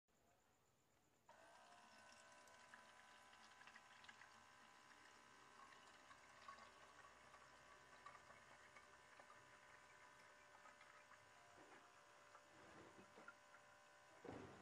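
Faint: a small electric water-dispenser (gallon-bottle) pump starts about a second in and runs steadily with a light whine, pumping water into a glass jar.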